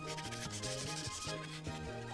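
Brush-tip paint marker rubbing across paper in colouring strokes, a scratchy hiss strongest for about the first second and then quieter. Background music with a steady bass line plays under it.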